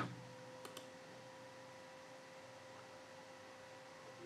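Two faint computer mouse clicks in quick succession about three-quarters of a second in, over quiet room tone with a faint steady hum.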